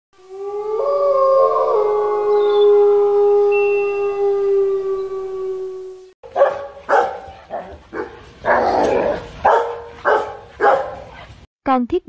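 A dog's sound effect: one long howl lasting about six seconds, then a rapid run of barks.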